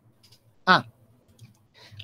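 A man's short "ah" about 0.7 s in, with faint scattered clicks of someone working at a computer as he edits code.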